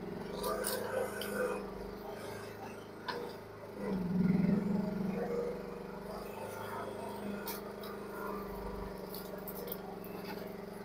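Mini excavator engine running steadily, working harder for a second or so about four seconds in as the arm pulls at brush and small trees, with scattered sharp cracks and snaps of breaking wood.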